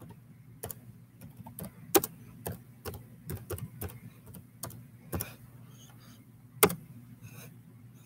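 Keyboard typing: irregular key clicks, several a second, with two sharper clacks about two seconds in and near the end, as a chat message is typed.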